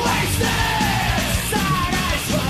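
Power/speed metal studio recording playing at a loud, steady level: a full band with a yelled vocal over it.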